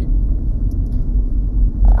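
Steady low rumble of road and engine noise heard inside a car's cabin while it is being driven.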